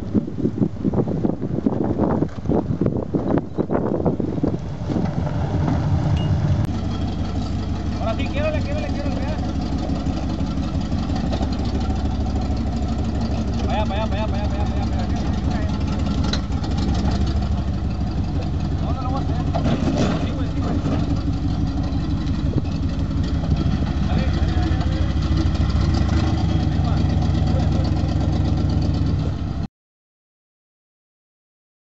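Jeep Wrangler's V8 engine running steadily at low revs while crawling over rock. Wind buffets the microphone in the first few seconds.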